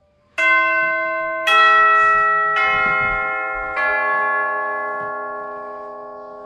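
A four-note bell chime: four bell tones of different pitches struck about a second apart, each left ringing so that they overlap and slowly die away.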